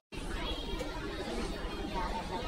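Indistinct background chatter of many voices in a busy restaurant, with a low steady hum underneath. It starts abruptly after a split second of silence.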